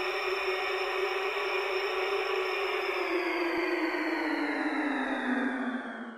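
Synthetic whoosh of filtered noise for a logo sting. It starts abruptly, holds steady, then slides down in pitch through the second half.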